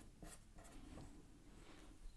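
Faint scratching of a felt-tip pen writing on paper, a few short strokes.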